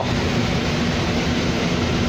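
Steady running noise inside a 2007 New Flyer D40LFR diesel bus: a low engine hum under an even hiss.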